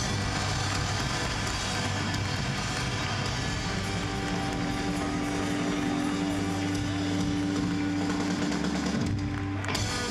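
Live punk rock band playing loud through the PA: electric guitar and bass holding a sustained passage, with the bass note changing late on. The band stops abruptly near the end.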